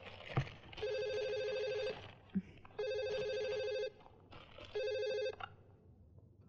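Cordless telephone ringing: three electronic rings about a second apart, the third cut off short as it is answered. A short thump comes just before the first ring, and another between the first two.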